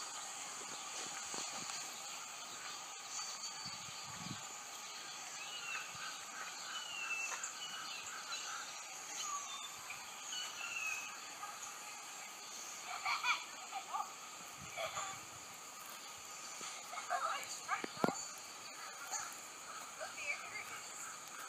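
Outdoor ambience: a few short, faint bird chirps over a steady high hiss, with a handful of brief louder sounds in the second half.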